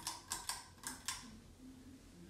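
Ceiling fan pull-chain switch being pulled: a quick run of about five sharp mechanical clicks within a second, the chain and switch clicking through their positions.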